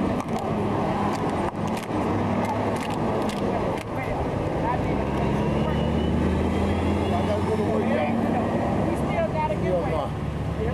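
A car engine idling close by, a low steady hum that grows stronger for a few seconds in the middle, with indistinct voices chatting and laughing over it.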